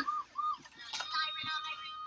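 Children's voices faintly in the background, high-pitched short calls and sing-song sounds, with a single sharp click about a second in.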